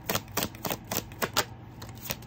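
A tarot deck being shuffled by hand: a quick, irregular run of sharp card clicks and slaps that thins out after about a second and a half.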